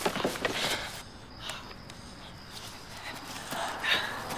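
Car door handling and footsteps as people climb out of a stopped car: a few short knocks in the first second, then a quieter stretch, and another knock just before the end.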